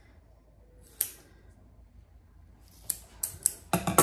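Scissors cutting moleskin: one sharp snip about a second in, then a quick run of snips and clicks near the end, the loudest just before it closes.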